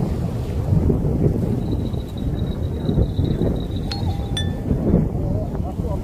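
Wind buffeting the microphone in a steady low rumble, with a faint high thin tone in the middle and two light metallic clinks about four seconds in.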